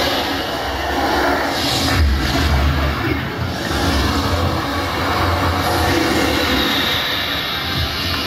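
Loud performance soundtrack of a circus acrobatic act over the arena's sound system: a dense, rumbling passage with a heavy low end and no clear beat.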